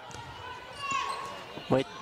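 Basketball being dribbled on a hardwood court, with a brief high squeak or call about a second in. A commentator starts speaking near the end.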